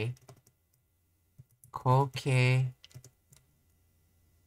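Computer keyboard and mouse clicks, a few scattered taps, with a man's voice drawing out a word for about a second near the middle.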